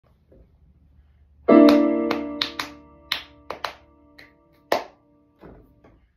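Piano duet playing four hands: a loud chord struck about a second and a half in and left ringing, followed by a handful of short, detached notes, then a brief pause near the end.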